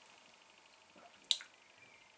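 A quiet pause in a small room, broken about a second in by one short, wet-sounding click.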